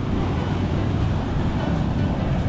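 Wind buffeting the camera microphone: a steady, loud low rumble with a rough hiss over it and no clear pitch.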